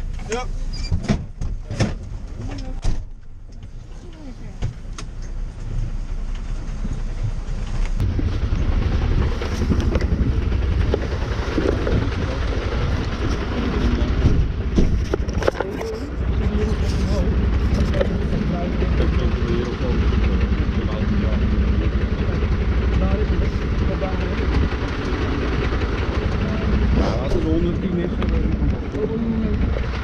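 Clicks and knocks from the fire engine's cab as the crew climbs out. From about eight seconds in, a loud, steady low rumble carries on outside, with the fire engine's engine running nearby.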